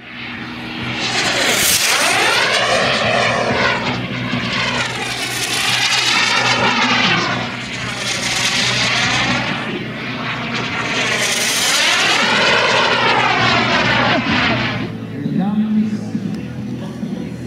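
Model jet's tuned P180 gas turbine running at high power as the jet makes about four fast passes, each a swelling rush that sweeps in pitch as it goes by and then fades.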